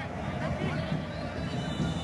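Faint field-level ambience of an empty football stadium: a few distant shouts over a steady low hum.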